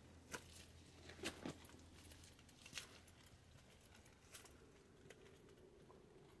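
Near silence, broken by a few faint, scattered clicks and rustles.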